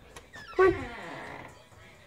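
A boy calling a dog with one long, drawn-out "come" that falls in pitch.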